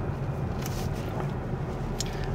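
Steady low rumble of a Kia K5 driving through city traffic, engine and tyre noise heard from inside the cabin.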